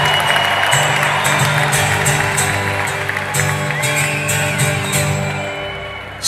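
Sustained keyboard chords playing a slow song intro, with audience noise and scattered claps over them; the music gradually gets quieter toward the end.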